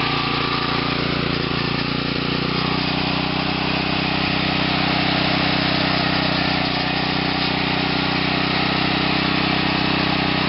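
Small engine running steadily at idle, fed through a homemade short plasma-reactor fuel pretreater with a weedeater carburetor.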